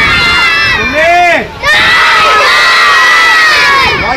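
A crowd of children shouting together, loud, in two long shouts with a short break about a second and a half in.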